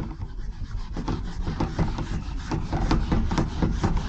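Whiteboard eraser rubbed in rapid back-and-forth strokes across a whiteboard, wiping off marker writing.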